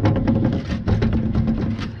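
A wooden 2x4 sliding down into a steel stake pocket on a dump trailer, with a rapid run of wooden knocks and scraping against the metal and a steady ringing from the hollow pocket.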